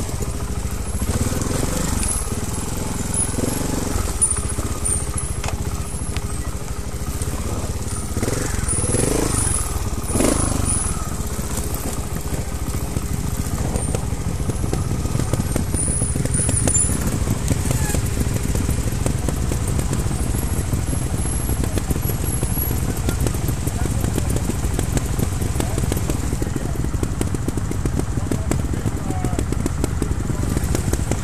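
Trials motorcycle engine running steadily, heard close up from on the bike, with short voices around eight to ten seconds in and faint high chirps of birds.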